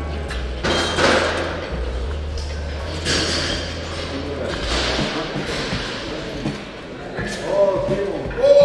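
Busy gym hall: voices over background music with a steady bass, and a few dull thuds.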